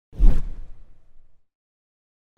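Whoosh transition sound effect with a low thump: it hits sharply just after the start and dies away within about a second.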